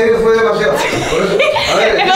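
Chuckling laughter mixed with talk.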